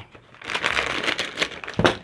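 Metallised plastic snack bag crinkling as it is cut open with scissors and handled, a dense crackly rustle lasting about a second that ends in a sharp click.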